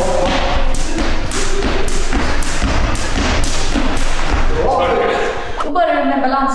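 A skipping rope in use: a jumper landing on a hard floor in a steady rhythm, about two thumps a second, with voices over it.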